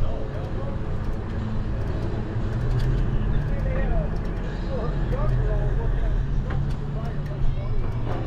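Steady motor hum with low rumbling road and wind noise from a vehicle moving along a paved street. Faint wavering, voice-like tones rise and fall over it.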